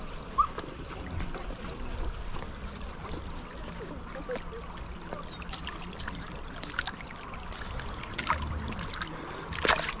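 Shallow river water running and trickling around stepping stones, with a few light clicks scattered through it.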